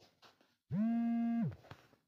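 A man's voice holding one drawn-out vowel at a steady pitch for under a second, starting about a third of the way in, with silence around it.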